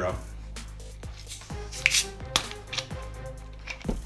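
Plastic soda bottle of carbonated Mountain Dew Zero being twisted open: a series of small clicks as the cap turns and its seal breaks, with a brief burst of hiss about halfway through as the gas escapes.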